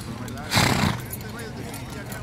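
A horse snorts once about half a second in: a short, loud, breathy burst. Horses are walking on a dirt track under it.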